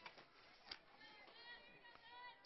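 Near silence: faint distant voices from the ballpark, with one light click less than a second in.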